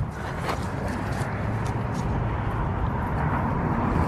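Steady outdoor background noise with a low rumble, rising slightly, and a faint tap about half a second in.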